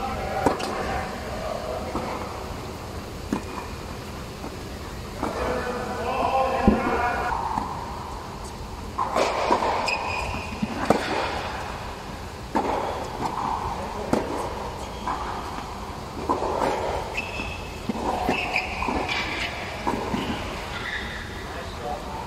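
Tennis balls struck by rackets and bouncing on an indoor hard court, a sharp hit every few seconds, with people talking in the background over a steady low hum.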